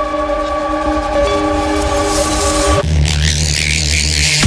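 Hard techno breakdown: a held, horn-like synth chord sounds on its own. About three-quarters of the way through it gives way to a deep bass drone under a hissing noise sweep, building back toward the kick drum.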